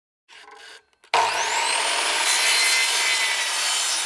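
Electric sliding compound mitre saw switched on about a second in, its motor whining up to speed, then cutting through a wooden board.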